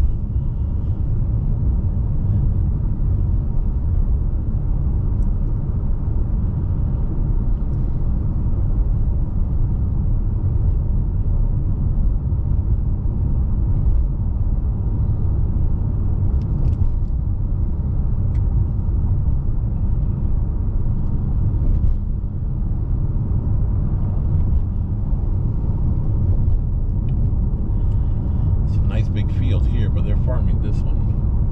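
Car road and engine noise heard from inside the cabin while driving: a steady low rumble.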